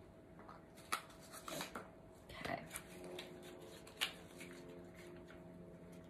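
A few faint, sharp clicks and taps of tools being handled on a tabletop, the clearest about a second in and again about four seconds in, over a quiet room.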